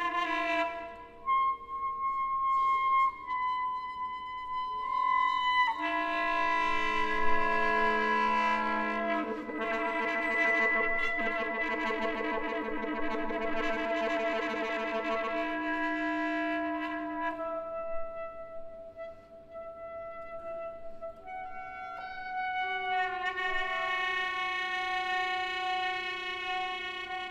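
Alto saxophone solo holding long, sustained notes over held orchestral chords in a contemporary concerto. The texture is sparse at first, thickens into a louder, fuller passage in the middle, then thins to single held tones before the chords fill out again near the end.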